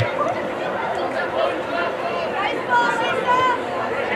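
Several voices shouting and calling out at once from players and spectators at a soccer game, overlapping chatter, with louder shouts about three seconds in.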